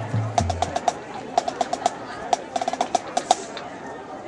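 Sharp, irregularly spaced wooden percussion clicks, about fifteen of them, from the marching band's percussion, over a low murmur of crowd voices. A few low bass notes step downward and end under a second in.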